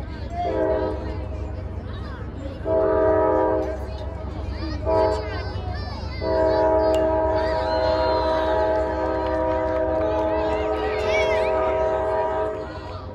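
A multi-tone horn chord sounding four times: a short blast, a longer one, a very short one, then one held for about six seconds, the pattern of a train horn warning at a grade crossing.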